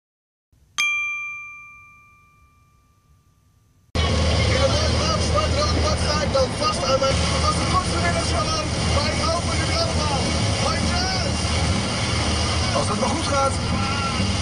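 A single bright chime struck once, ringing with several clear tones and fading over about two seconds. About four seconds in it cuts abruptly to steady vehicle road and engine noise from a dashcam on a motorway drive.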